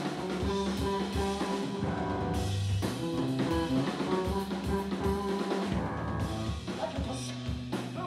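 Live rock trio of electric bass, electric guitar and drum kit playing an instrumental passage, with no singing.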